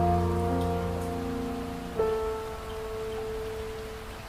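Slow background piano music: a chord rings and fades, and a new note is struck about two seconds in and dies away, over a faint steady hiss.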